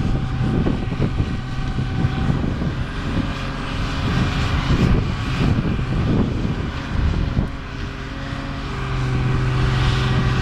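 Diesel engine of a Prentice knuckleboom log loader running steadily under load as it swings its boom, its level dropping briefly near the end and then rising again.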